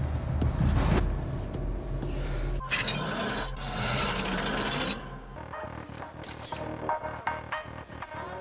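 TV-drama soundtrack: a low music drone with a loud rasping, hissing sound effect lasting about two seconds in the middle. The drone drops out soon after, leaving quieter scattered clicks.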